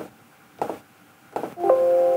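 A few short clicks, then from about one and a half seconds in a computer system chime: a chord of several steady tones that enter almost together and hold for about a second, the Windows alert that sounds as an information dialog box opens.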